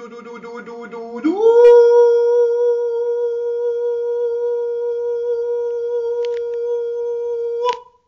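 A man singing: a short 'dou' syllable, then his voice slides up into one long held 'oo' note, sustained steadily for about six seconds and cut off just before the end.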